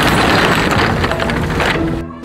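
Roll-up rear door of a box truck being pulled down, a loud continuous metal rattle that stops about 1.7 seconds in.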